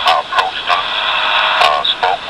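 Speech from a tape-recorded conversation played back, thin and tinny, with a steady hiss beneath it.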